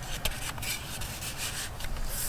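Paper rustling and rubbing as a small paper tag is slid down into a paper pocket on a journal page, with a few short scratchy strokes.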